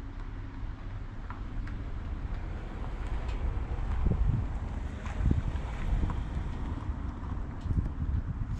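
Wind buffeting the camera microphone: a low rumble that rises and falls in gusts, loudest about halfway through, with a few faint clicks.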